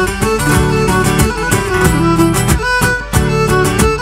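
Live Cretan folk music for dancing: a Cretan lyra carries the melody over strummed laouto and mandolin, with percussion keeping a steady quick beat.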